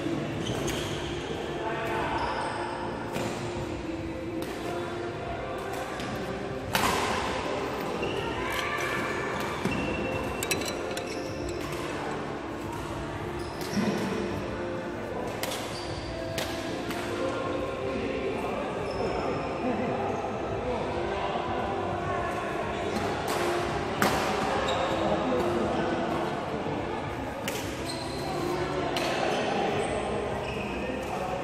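Badminton rackets hitting shuttlecocks, sharp smacks every few seconds, the loudest about seven seconds in, again near fourteen seconds and about twenty-four seconds in, echoing in a large sports hall.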